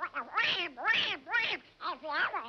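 Cartoon duckling's quacking voice laughing in a string of about six short, high calls that bend up and down in pitch.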